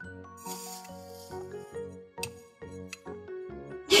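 Background music: a light tune of short notes over a steady beat.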